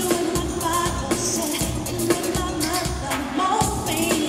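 Live pop concert music recorded from the audience: a woman singing lead over a band with a steady drum beat.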